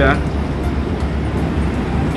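Steady city traffic noise, a continuous low rumble with no distinct events.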